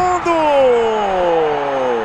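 A male football commentator's long drawn-out call, held briefly and then falling steadily in pitch over nearly two seconds, over steady stadium crowd noise as the shot goes in.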